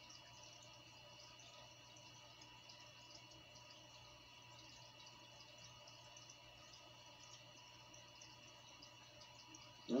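Near silence: the faint steady hum and hiss of an aquarium filter running, with no distinct events.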